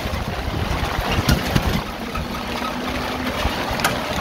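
Steady hiss of heavy rain and tyres on a flooded road, heard from inside a moving battery-powered auto-rickshaw, with a few short knocks from the vehicle.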